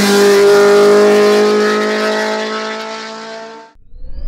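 Osella PA9 race car's engine running hard with a steady note as the car pulls away, growing fainter with distance, then cut off suddenly near the end.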